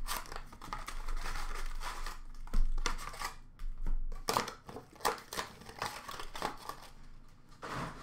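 Hands tearing open and crinkling the wrapper of a 2015-16 Upper Deck Champs hockey card pack: irregular crackling rustles with a few sharper rips, the loudest about two and a half seconds in.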